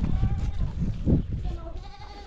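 A farm animal bleating, with people's voices and low rumbling noise.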